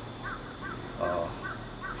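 A bird calling: a quick series of about six short, faint chirping calls, roughly four a second, over a steady low room hum.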